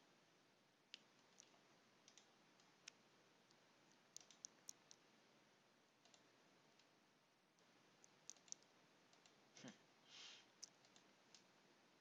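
Faint computer mouse clicks, scattered and sometimes in quick pairs, over quiet room tone. There is a short soft rustle about ten seconds in.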